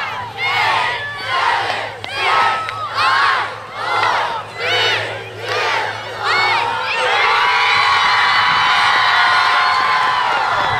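Crowd of spectators chanting in rhythm, then breaking into loud sustained cheering and screaming about seven seconds in.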